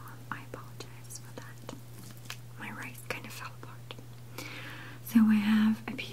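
A woman whispering softly, with a few faint clicks and scrapes of a metal fork working into rice pilaf on a plate; a steady low hum runs underneath. The whisper grows louder near the end.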